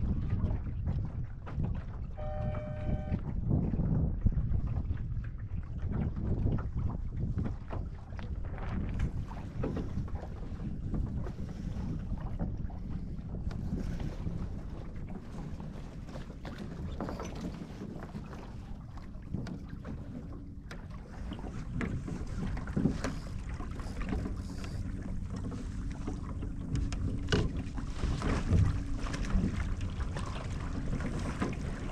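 Wind buffeting the microphone and water slapping against a small sailing dinghy's hull, with scattered knocks and splashes as the boat sails. A brief tone sounds about two seconds in, and a faint low hum comes in over the last third.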